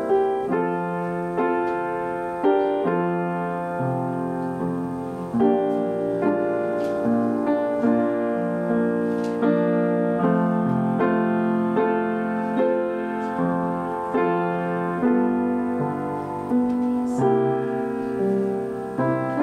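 Slow solo piano music, single notes and chords struck every half second or so and left to ring.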